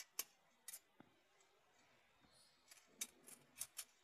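Mostly quiet, with a few faint clicks and taps, several of them close together near the end: a thin aluminium foil strip being handled and fed through the slit between a folding endurance tester's metal jaws.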